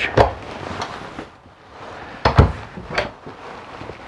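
Wooden kitchen cabinet doors in a travel trailer being opened and shut: a few sharp knocks and clicks, two of them close together a little past the middle.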